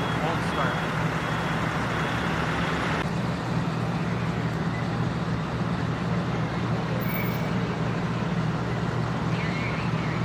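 Steady low engine hum with a haze of noise, with faint voices in the background in the first second or so.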